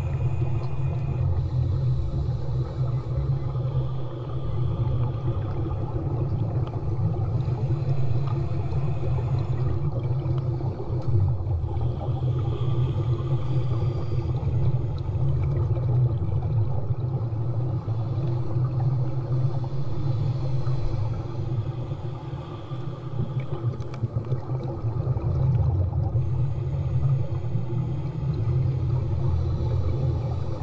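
Muffled underwater sound beside a submerged snorkeler: a steady low rumble, with a fainter higher hiss that swells and fades every few seconds.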